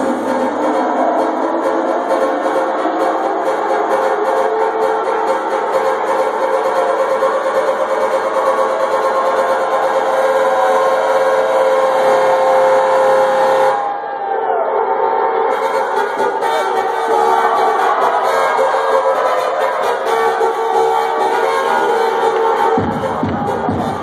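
Electronic dance music from a DJ set, played loud through a club sound system. It is a bass-less stretch of held synth chords with a long sustained tone, and the high end is briefly filtered away a little past the middle.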